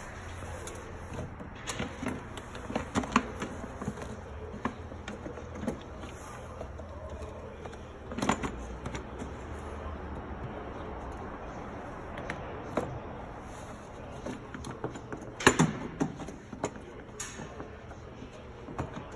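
Plastic battery tray being fitted into a car's engine bay by hand, with tools handled nearby: scattered knocks and clicks over a low steady hum, the loudest about eight seconds in and again about fifteen and a half seconds in.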